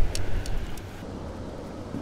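Low, steady rumble of a boat motor running, with wind and water noise. There are a few faint ticks in the first second, and the sound drops in level about a second in.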